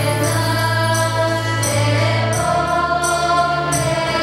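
Girls' choir singing slow, long-held notes, with a low sustained bass tone beneath the voices.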